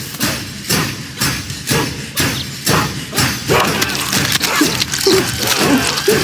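Cartoon soundtrack: a run of evenly spaced thuds, about two a second, through the first half, then a character's voice sounds in the second half.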